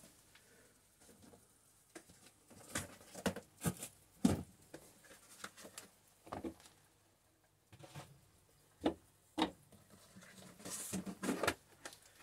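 Light knocks and clicks of things being handled and set down on a bench, scattered a second or so apart with quiet between, and a short rustle and scrape near the end.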